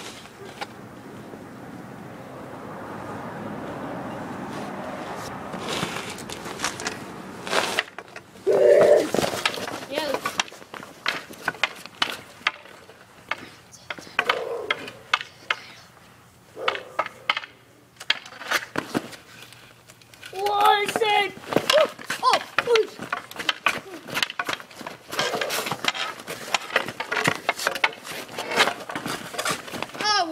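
Street hockey sticks clacking and scraping on pavement in quick, irregular knocks, with children shouting in between. A rushing noise builds over the first several seconds and then stops.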